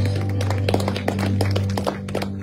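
Live band music between sung lines: a low bass note held steady under a string of light, quick taps from the drum kit or guitars.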